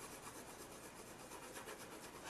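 Faint scratchy rubbing of a Prismacolor colored pencil shading back and forth on Bristol paper in quick, even strokes.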